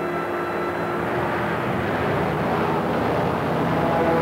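Storm wind for a film's thunderstorm scene: a loud, steady rushing noise that builds slightly, with held low musical tones fading out early on.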